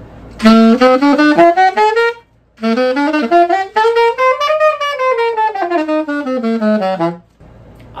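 Alto saxophone played with a blue-box Rico Royal cane reed: a quick rising run, a short break, then a longer phrase that climbs up the scale and comes back down. The player finds this reed much harder to blow than his usual orange-box Rico.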